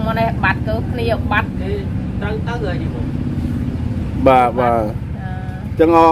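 A woman talking in Khmer in short phrases, with pauses between them, over a steady low mechanical hum.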